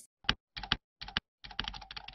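Computer keyboard typing sound: a few short groups of key clicks, then a quick run of keystrokes from about one and a half seconds in, accompanying on-screen text being typed out.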